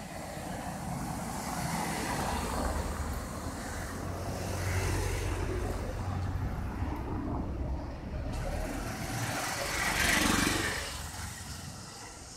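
Street traffic: a steady low rumble of road vehicles, with one vehicle passing close and growing louder, then fading, about ten seconds in.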